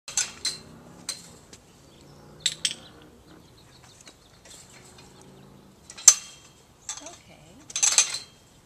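Metal chain-link gate being opened and closed: a series of sharp metallic clinks and rattles from the latch and the wire mesh, loudest about six seconds in and again near the end.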